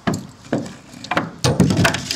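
Framing hammer driving nails into lumber. A few sharp strikes about half a second apart, then several blows in quick succession.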